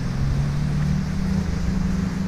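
Boat engines droning steadily under the wash and rumble of heavy breaking surf.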